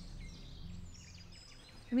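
Quiet woodland ambience: a low steady hum under faint, scattered bird chirps.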